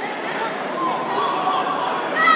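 Indistinct chatter of several people talking at a distance over a steady background hiss.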